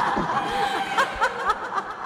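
Snickering laughter in quick short bursts, about five a second, over a steady held tone, dying away near the end.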